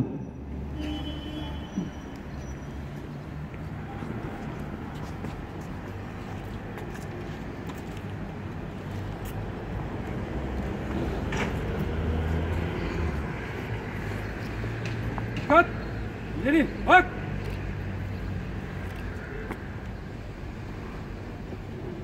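Open-air town-square ambience with a steady low rumble of road traffic. About two-thirds of the way through, a few short, sharp calls, one of them a single shouted word.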